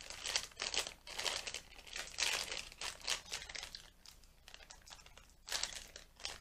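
A small plastic food packet crinkling as it is pulled and twisted by hand, in irregular crackles that are busiest over the first three seconds or so, fainter for a couple of seconds, then a fresh burst near the end. The packet is resisting being torn open.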